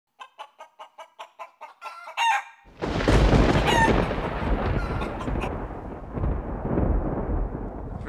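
Chicken clucking in a quick run of short clucks. About two and a half seconds in, a loud thunderclap breaks and rumbles on, slowly fading, with a rooster crowing over its start.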